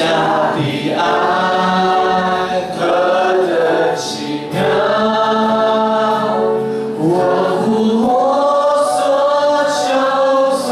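A congregation singing a Mandarin worship song together, led by a man singing into a microphone, in long held notes with short breaks between phrases.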